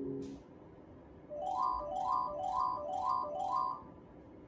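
Merkur slot machine's electronic win jingle: five quick rising chime runs, about two a second, as a win is tallied. The first half second holds the tail of the machine's low reel-spin tune.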